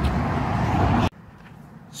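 Steady, loud rushing of road traffic that cuts off abruptly about a second in, leaving a much quieter outdoor background.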